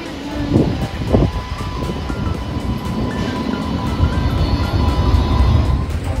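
Low steady rumble of a moving light rail tram, heard from on board, under background music with a stepping melody.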